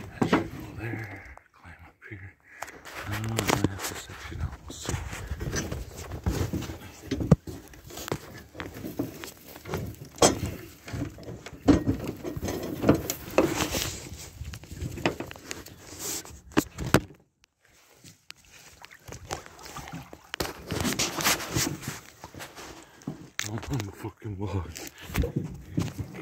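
Aluminium boat hull knocking and scraping against a fallen log, with irregular thumps and handling noise, and a man's voice muttering without clear words. There is a short lull about two-thirds of the way through.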